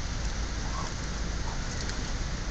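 Steady rain-like hiss with a low rumble, over which a few faint short wet clicks come from a dog licking and gnawing a cooked pig's trotter bone.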